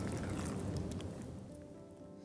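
A spoon stirring chicken pieces through a thick, creamy gravy in a pan. The wet stirring fades over the second half as soft background music with held notes comes in.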